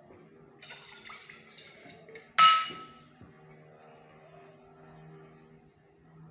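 Glass jar of oil being handled: soft rattling and scraping, then one sharp glass clink about two and a half seconds in that rings briefly and is the loudest sound.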